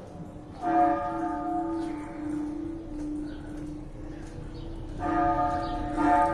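A single church bell tolling: struck about a second in, ringing on and slowly fading, then struck again near the end.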